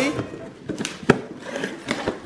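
Cardboard shipping box being torn open by hand: the flaps pull free and rustle, with scattered sharp snaps and one louder snap about a second in.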